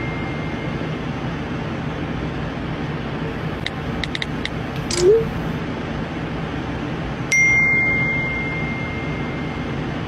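Phone text-messaging sounds over a steady car-cabin hum. A few faint keyboard taps come first, then a short rising swoosh of a sent message about five seconds in. A little after seven seconds a single ding of an incoming message starts suddenly, rings on and fades.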